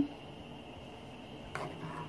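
Faint steady hiss of rice-and-corn broth simmering in a wide metal pan as a large spoon moves through it, with one brief soft sound about one and a half seconds in.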